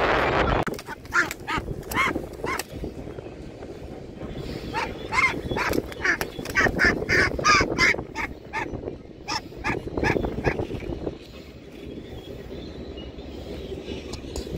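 White domestic duck calling in distress with a long series of short, loud honking quacks while an eagle grips it, the calls dying away near the end. A burst of scuffling noise comes at the very start.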